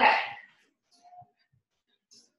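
A woman says "okay" at the start, then it goes quiet apart from one faint, brief squeak about a second in.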